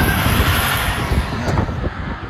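Roller coaster ride noise heard through a phone's microphone: a loud, steady rumble of the cars on the track mixed with wind buffeting the mic, easing slightly near the end.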